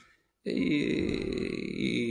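A man's voice: a drawn-out, creaky vocal sound lasting about a second and a half, starting about half a second in after a short silence, held between words of his speech.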